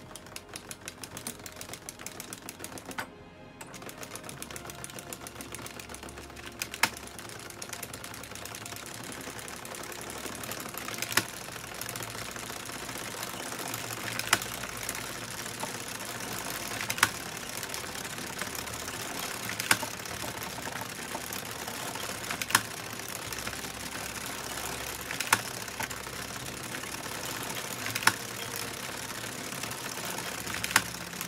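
Hand-cranked Addi Express circular knitting machine running: a steady rapid clatter of plastic needles being driven round the ring, with a sharper click about every three seconds.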